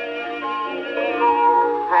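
Orchestral accompaniment on a 1913 recording of a popular song, playing between the singer's lines. A wavering held note sounds at the start, followed by steadier held instrumental notes.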